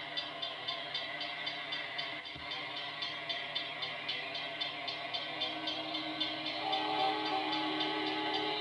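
Railroad grade-crossing warning bell ringing in a fast, even rhythm of about three strikes a second as the crossing signals activate.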